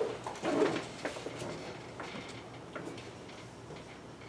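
Quiet classroom with a brief low vocal sound, like a hum or murmur, about half a second in, then a few faint soft clicks.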